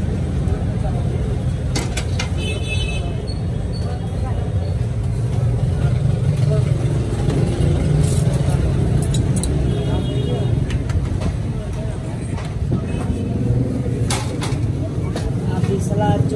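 Steady low rumble of road traffic with indistinct voices, and a few sharp clinks of steel utensils and bowls.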